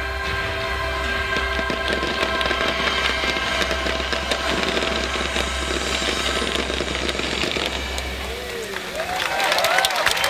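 Fireworks crackling and bursting over the tail of the show's music, which dies away about eight seconds in; near the end a crowd starts cheering.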